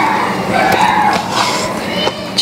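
Hands kneading and squeezing a soft dough of mashed potato and rice flour in a stainless steel bowl: a steady squishing and rubbing noise.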